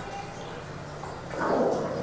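A short, rough call from a hungry pet, lasting about half a second near the end, over a low steady hum.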